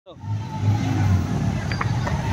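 Several motorcycle engines running at low speed, a steady low hum.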